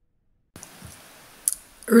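Dead silence, then faint room hiss as the recording begins about half a second in, and a single sharp click about a second and a half in, just before a woman's voice starts.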